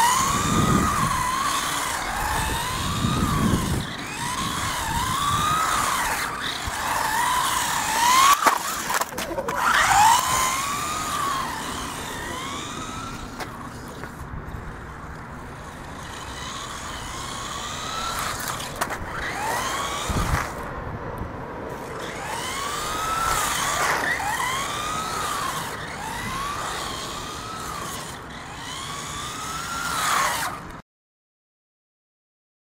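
Small electric RC buggy's motor whining as the throttle is pulsed, its pitch rising and falling in short sweeps about once a second, with tyre noise on asphalt. A few sharp knocks come about a third of the way in.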